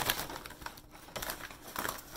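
Packing paper crumpled and rustled by hand, loudest at the start, then a few quieter crinkles.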